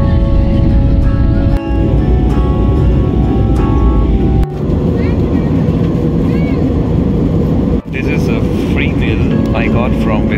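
Loud, steady roar of a jet airliner cabin heard from a window seat, in short edited clips that cut off abruptly about four and a half and eight seconds in. Steady held tones like music sit over the roar in the first half, and faint voices come in near the end.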